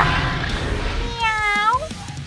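A single cat meow, about half a second long, dipping in pitch and rising again at the end, over a low rumbling background.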